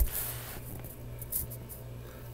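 Quiet room tone: a steady low hum under a faint hiss, with a brief click at the very start.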